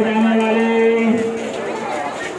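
A young man's voice holding one long drawn-out call for a little over a second, then trailing off into looser voices.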